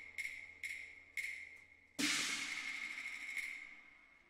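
Cantonese opera percussion: a quick run of sharp, ringing metallic strikes, then a much louder crash about two seconds in that rings out slowly.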